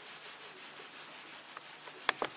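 A hand rubbing a thin plastic sheet over wet merino fleece laid on bubble wrap, a steady soft swishing rub; it is the rubbing stage of wet felting, done along the stripes to felt the fibres.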